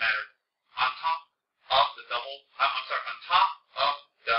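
A man's voice in short phrases with brief pauses between them.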